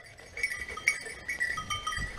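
Small bells on running hunting dogs' collars jingling in short, irregular rings, with low rumble from running footsteps in dry leaves toward the end.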